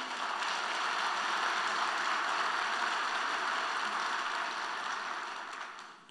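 Audience applauding in a large hall: steady clapping that dies away near the end.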